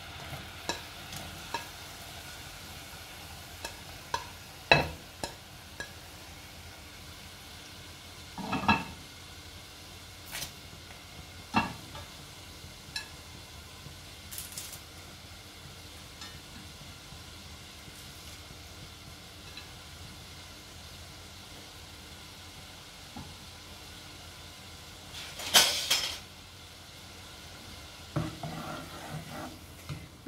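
Water boiling in a saucepan on a gas stove, with scattered clicks and knocks as chopped onion, garlic, green chillies and leaves are scraped off a plate into the pot. A louder clatter comes about three-quarters of the way through, and a spatula stirs the pot near the end.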